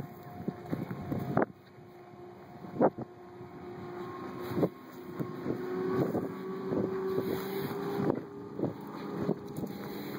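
A steady engine hum, its pitch rising slightly through the middle, with irregular footsteps on the forest floor.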